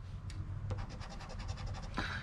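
A poker-chip-style coin scraping quickly back and forth across a lottery scratch-off ticket, rubbing off the coating over a number, in rapid even strokes.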